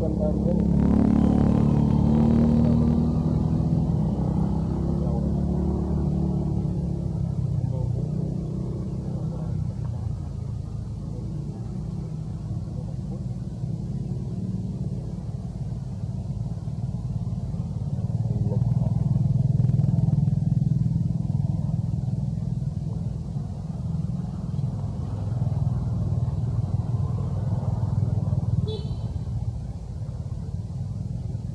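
Low motor-vehicle engine rumble that swells about a second in and again around twenty seconds in.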